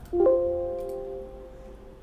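A single bell-like musical tone, struck once about a quarter of a second in, ringing out and fading away over about a second and a half.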